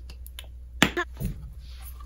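A few sharp clicks and taps from a small candle jar and plastic packaging being handled, the two loudest close together about a second in, over a low steady room hum.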